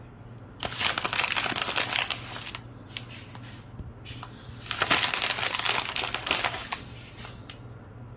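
Plastic bag of shredded cheese crinkling in two bursts of about two seconds each as cheese is taken out and scattered, with a few light clicks between.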